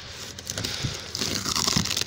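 Cardboard shipping box and its packing tape handled by hand, a crinkling, crackling rustle of cardboard that grows louder from about halfway through.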